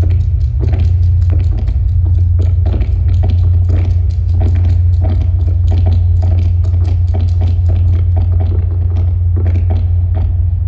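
Electronic sound-design soundtrack of a projection-mapping piece, played over loudspeakers: a loud, steady deep rumble under a stream of irregular clicks and knocks.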